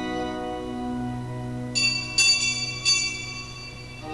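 Church pipe organ holding sustained chords, with a small high-pitched bell struck three times, starting a little under two seconds in and lasting about a second; the bell strikes are the loudest sounds.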